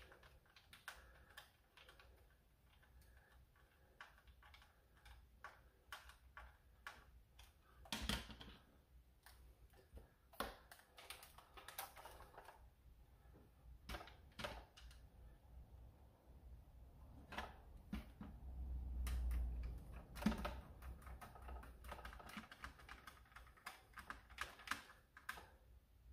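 Small screwdriver driving screws into the plastic stock of a Dart Zone Pro MK4 foam-dart blaster, with faint, scattered clicks and taps of plastic parts being handled. A soft low rumble comes about two-thirds of the way through.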